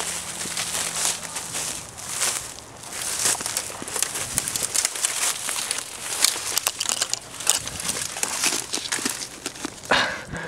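Dry twigs and brush crackling and snapping, with rustling of dry leaves, as someone moves through the undergrowth. It comes as a dense, irregular run of small cracks and rustles.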